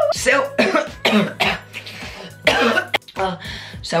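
A person coughing in a run of about five short, rough coughs with a throat-clearing, with faint background music underneath.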